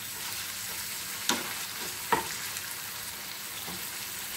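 Beef mince sizzling as it fries in olive oil in a frying pan, stirred with a wooden spatula that scrapes and knocks sharply against the pan twice, about a second in and again about two seconds in.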